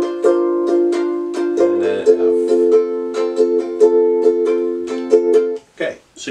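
Acoustic ukulele strummed by hand in a steady rhythm, with a change of chord about two seconds in. The strumming stops shortly before the end.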